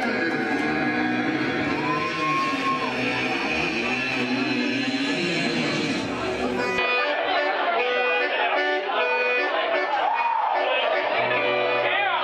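Live band playing, led by strummed acoustic and electric guitars, with crowd voices over it. About seven seconds in, the sound changes abruptly: the crowd noise and low end drop away, leaving clearer guitar notes.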